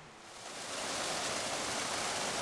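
Water falling from a wall spout into a small garden pond, a steady splashing that swells in shortly after the start and holds.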